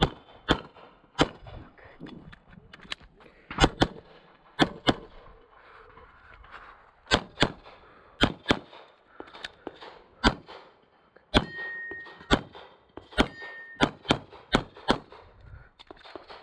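CZ Shadow 2 pistol firing, about twenty sharp shots that come mostly in quick pairs with short gaps between groups, as the shooter engages targets across a USPSA stage.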